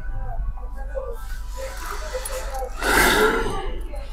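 Low, indistinct voices, with a short breathy vocal sound about three seconds in, the loudest moment, over a low steady hum.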